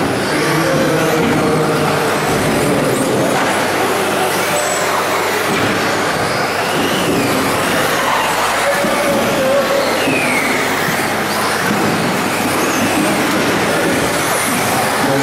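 1/10-scale two-wheel-drive electric RC buggies racing on an indoor carpet track. Motor whines rise and fall as the cars accelerate and brake, over a steady wash of noise.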